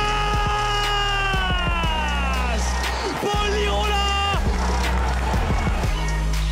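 Hip hop backing music with a steady deep bass. A long held vocal note slides slowly down in pitch over the first two and a half seconds, and a shorter one follows about a second later.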